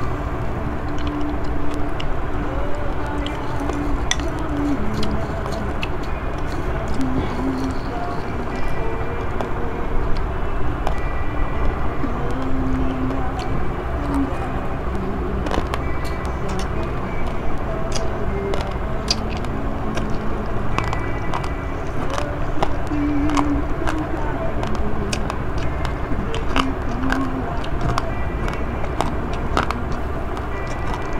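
Metal spoon clicking against a bowl and a mouth chewing rice, scattered clicks over a steady background noise with snatches of music or voices.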